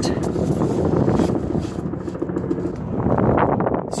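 A steady low mechanical hum with rustling and a few light knocks, busier near the end.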